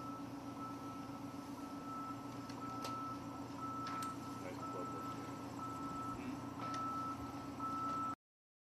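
A steady low hum with a high, thin electronic-sounding tone beeping on and off in uneven pulses, and a few faint sharp clicks.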